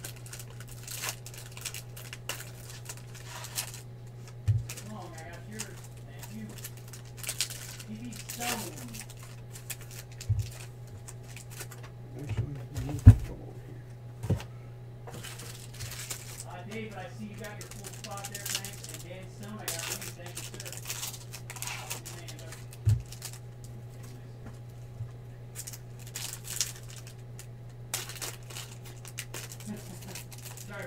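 Bowman Chrome trading-card packs being torn open by hand and the cards shuffled and sorted: wrapper crinkling and tearing, with cards and stacks tapped down on the tabletop, over a steady low hum. The loudest sound is a sharp knock near the middle.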